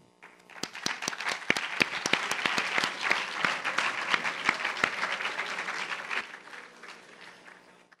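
Audience applauding: many hands clapping, starting about half a second in, holding strong for several seconds and then dying away over the last two seconds.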